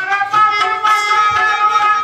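Live Indian traditional music from the theatre's ensemble: a melodic instrument holding long, steady notes over hand-drum strokes.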